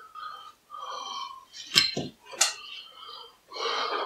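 A person settling at a kitchen table: short rasping scrapes, with two sharp knocks about two seconds in.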